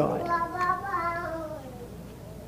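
A young child's high voice, one drawn-out wavering sound about a second and a half long that sinks slightly in pitch as it fades.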